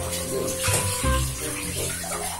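Kitchen tap running, water splashing into a bowl of mushrooms in the sink, under background music with a steady bass beat.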